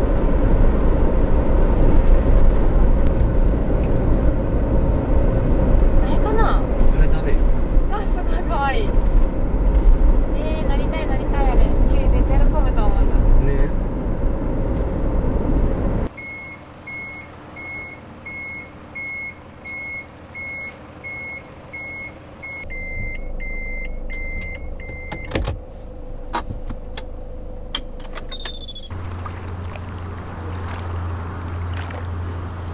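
Steady road and engine rumble heard inside a moving camper van, with a few high whistling chirps partway through. The rumble then cuts off abruptly and a high electronic beep repeats about twice a second for several seconds, quickening briefly before it stops.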